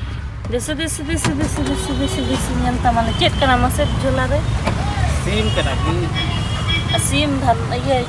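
People talking over the low, steady rumble of a car engine idling, with a few brief clicks.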